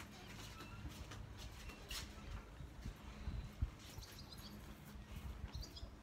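A deck of oracle cards being shuffled by hand close to the microphone: irregular soft clicks and taps, with one sharper tap about three and a half seconds in. The shuffling is really loud on the recording.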